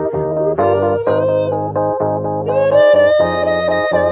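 Live music on a keyboard: held chords over a sustained bass note, the chords changing about once a second, with a wavering melody note on top in the second half.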